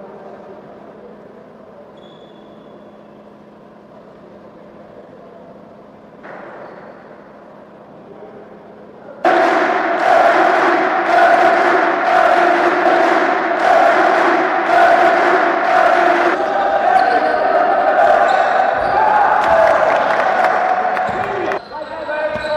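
A group of people clapping in unison, about one and a half claps a second, with voices shouting and cheering along; it starts suddenly about nine seconds in, after a quieter stretch of hall murmur.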